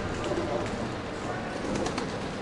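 Open-air street ambience on a cobbled square: indistinct voices in the background and a pigeon cooing.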